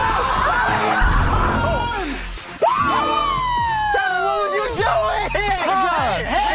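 Excited shouting and whooping voices over background music, with one long falling note starting about halfway through.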